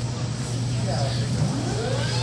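Steady low hum of restaurant room noise with faint voices in the background. A sound rising in pitch comes in near the end.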